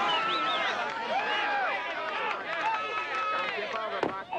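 Several people shouting and calling out over one another, some voices high and drawn out, with no clear words.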